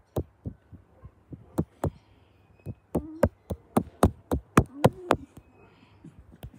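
A dog's body bumping and rubbing against the microphone while being petted: irregular sharp knocks and taps, several a second, coming thickest and loudest about halfway through.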